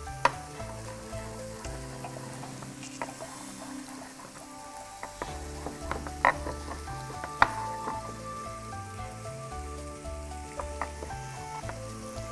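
Chef's knife chopping olives on a wooden cutting board: a few sharp, irregular taps. Under them runs a steady sizzle from tilapia cooking in the closed contact grill.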